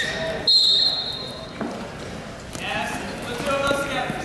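A single sharp whistle blast, a steady high tone, about half a second in; it is the loudest sound here. Voices shouting follow in the second half.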